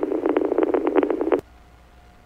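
Police radio transmission, garbled and crackly with no clear words, that cuts off with a click about one and a half seconds in, leaving only faint radio hiss.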